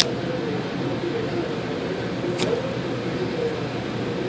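The plastic clips of a phone frame clicking as a plastic opening tool pries it loose: one sharp click at the start and a fainter one about two and a half seconds in, over steady room noise.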